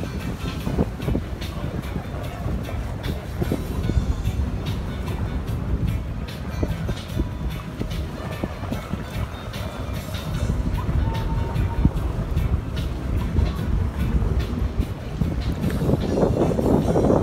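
Tour boat under way: a steady low engine-and-water rumble with wind buffeting the microphone, and music playing over it.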